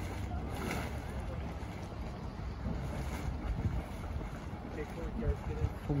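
A hot-spring mud pot boiling and spattering: thick mud churning and splashing up out of the pool. Wind on the microphone runs under it.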